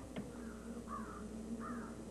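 A bird calling three times, short arched calls spaced about half a second apart, over a faint steady hum.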